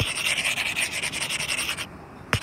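A stylus tip scrubbing rapidly back and forth on a tablet's glass screen, erasing handwritten working, then stopping just before the end.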